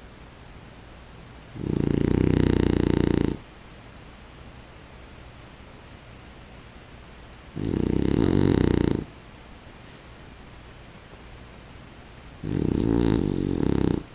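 A sleeping French bulldog snoring: three long, fluttering snores, about two seconds in, about eight seconds in and near the end.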